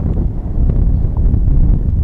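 Strong wind buffeting the microphone of a handheld action camera, heard as a loud, fluctuating low rumble.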